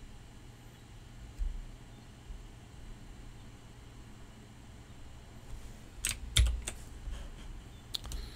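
Computer keyboard keys clicking a few times near the end, after a soft thump about a second in, over a faint low room hum.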